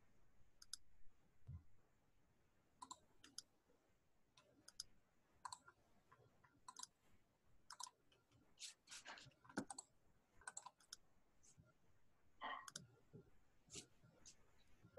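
Faint, irregular clicks, roughly one or two a second, over near silence in a small room, with a slightly stronger run of them about nine seconds in.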